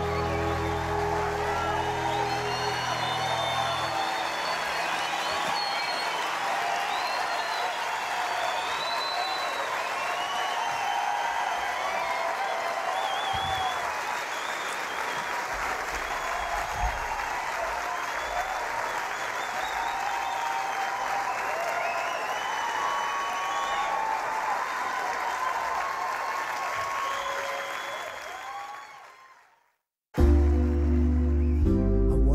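Concert audience applauding and cheering, with whistles, as a song ends; the last low notes of the music die away in the first few seconds. The applause then fades out near the end.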